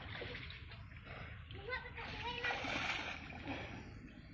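Water splashing from a person swimming, with a short voice heard about halfway through.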